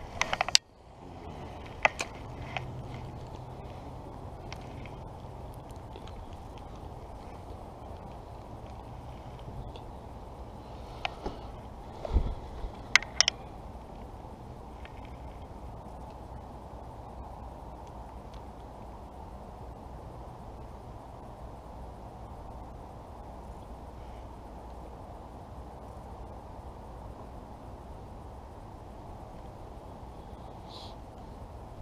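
Steady low outdoor background broken by a few sharp clicks and knocks from a spinning rod and reel being handled, the loudest cluster about twelve to thirteen seconds in.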